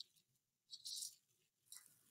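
Near silence: room tone, with a faint, brief soft hiss about a second in.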